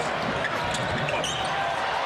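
Live basketball game sound in a large arena: steady crowd noise with the ball bouncing and sneakers squeaking on the hardwood court during a scramble under the basket.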